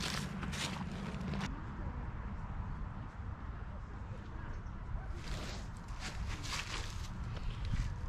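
Wind rumbling steadily on the microphone, with a few soft rustling or handling sounds near the start and again from about five seconds in.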